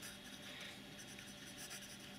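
Faint scratching of a Diplomat Classic's broad steel fountain-pen nib writing on paper: a smooth nib with a touch of feedback, not scratchy.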